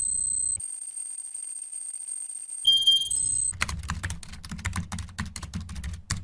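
Electronic sound effects for an animated logo: a steady high-pitched tone, a short beep about halfway through, then a fast run of sharp typing-like clicks over a low rumble in the second half.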